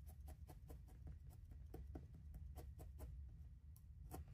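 Felting needle stabbing repeatedly into wool wrapped over a wire armature, a faint, quick, even tapping of about four to five pokes a second.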